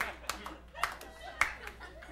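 Scattered handclaps from a comedy club audience, a handful of sharp, irregularly spaced claps over a faint murmur.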